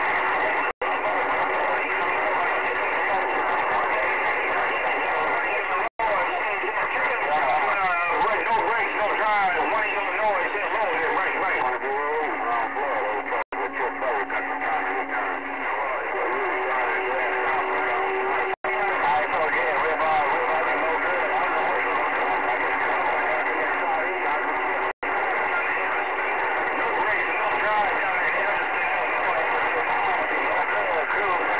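Galaxy CB radio receiving a crowded channel: garbled, unintelligible voices and warbling whistles over steady, thin-sounding static. Near the middle a couple of steady low whistles sound for a few seconds each, and about five times the sound cuts out for an instant.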